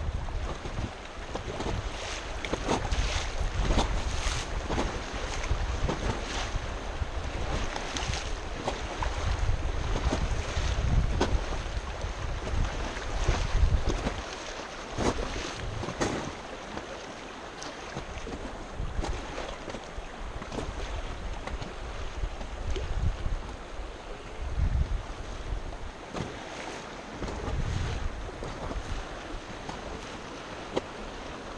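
River current rushing and slapping against an inflatable raft, with sharp splashes throughout. Wind buffets the microphone, heaviest in the first half and again briefly near the end.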